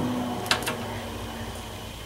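Low steady room hum with two brief, faint clicks about half a second in.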